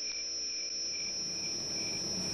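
Crickets chirping: a steady high trill with a lower chirp pulsing about twice a second.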